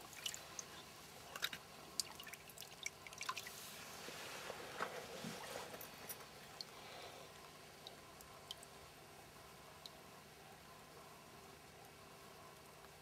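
Small drips and light splashes of shallow river water around hands holding an Atlantic salmon in the current while it recovers. A quick run of sharp drips in the first few seconds, a soft swirl of water in the middle, then only the odd drip.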